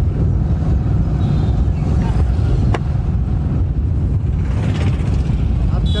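Steady low rumble of wind on the microphone and vehicle running noise while riding along a road, with one sharp click a little under three seconds in.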